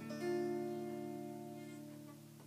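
Electric guitar strumming a D minor chord once, letting it ring and slowly fade.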